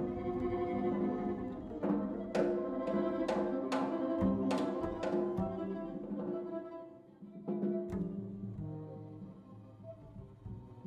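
Live jazz ensemble music with a violin bowing held notes over the band, punctuated by a run of sharp struck accents in the middle and two more later, then growing quieter toward the end.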